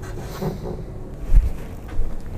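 A single dull, low thump about two-thirds of the way through, over faint room noise.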